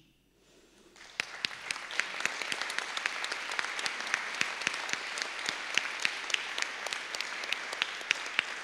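Audience applauding: after a brief hush, the applause starts about a second in and holds steady, with individual claps standing out.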